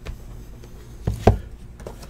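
Cardboard trading-card box set down on a table mat: two dull knocks in quick succession about a second in, then a lighter tap.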